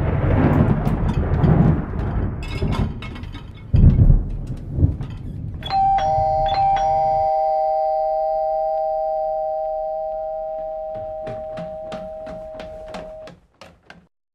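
Dishes and cutlery clattering as a dishwasher is unloaded. Then, about six seconds in, a doorbell sounds a two-note ding-dong chime that rings on and fades slowly over about seven seconds, followed by a few light clicks near the end.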